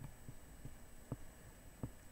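Faint room hum with about four soft, low taps spread through it.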